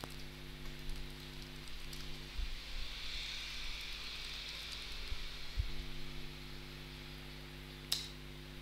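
Steady low electrical hum with a faint fan-like hiss, and a few soft computer keyboard keystrokes as a short command is typed. A single sharp click comes near the end.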